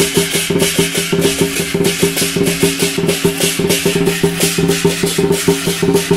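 Lion dance percussion: a drum and hand cymbals played in a fast, unbroken beat, with strikes several times a second over a steady ringing tone.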